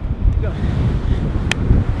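Wind buffeting the microphone in a low rumble, with ocean surf behind it. One sharp click comes about one and a half seconds in.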